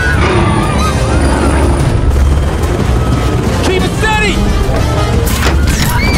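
Film action soundtrack: a deep, continuous rumble with booms under music, brief high-pitched shrieks about four seconds in, and a sharp crash shortly before the end.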